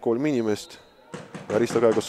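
Thud of a boot striking a football as a free kick is taken, near the end, under a commentator's voice.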